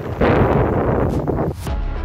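Wind buffeting the microphone with a loud rumbling rush, cut off about a second and a half in; electronic background music starts just after.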